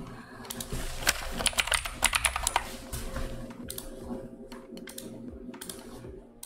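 Typing on a computer keyboard: a quick run of key clicks through the first two and a half seconds, then a few scattered keystrokes.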